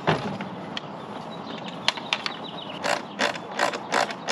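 A LiFePO4 battery being set down and pushed into a camper's battery compartment: a knock as it lands, a few clicks, then a run of evenly spaced clicks, about three a second, in the second half.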